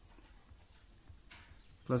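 Faint pen strokes on paper as a short expression is written by hand, in a quiet room; speech resumes at the very end.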